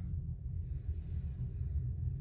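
A steady low rumble of background room noise, with a faint soft breath through the nose partway through.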